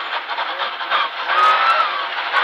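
Rally car engine driving hard on a gravel road, heard from inside the cabin, with steady road and gravel noise. Just past the middle the engine note comes up and rises slightly in pitch as the car accelerates.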